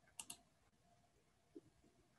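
Two sharp clicks in quick succession, then a single faint low knock near the end, against near silence.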